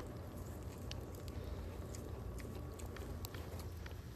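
Faint crunching of a snow cone being bitten and chewed: scattered small clicks over a low, steady outdoor rumble.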